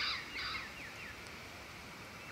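A bird calling in the background: a run of short, falling whistled notes, about three a second, that fade out within the first second, over low outdoor background noise.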